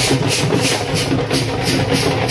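Procession drums and clashing cymbals playing a steady beat, about three clashes a second, over a low continuous hum and crowd noise.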